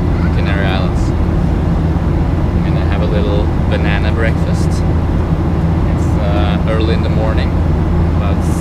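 Airliner cabin noise in flight: a steady, loud, low drone of the engines and rushing air, with voices talking over it.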